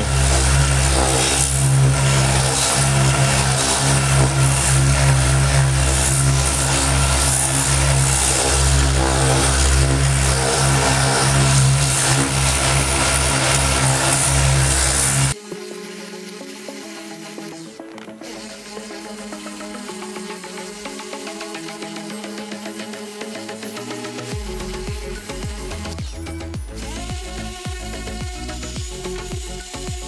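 Random orbital sander with a 180-grit disc running steadily, sanding the old cracked coating off a plastic car interior trim part. It cuts off suddenly about halfway through, and background electronic music follows, with a beat coming in near the end.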